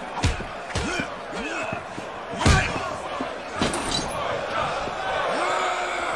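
Punches and kicks landing in a film fight: about five sharp hits, the loudest about two and a half seconds in and two in quick succession near four seconds. Men's shouting runs underneath.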